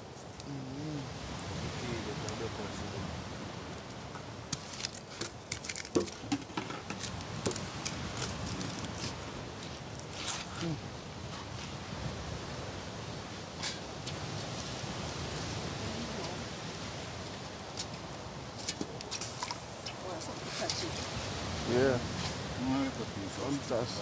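Open wood fire crackling, with scattered sharp pops and clicks over a steady hiss, and voices talking faintly in the background.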